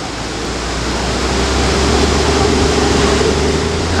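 Rushing white water of a mountain cascade, a steady loud rush with a deep low rumble underneath that grows gradually louder.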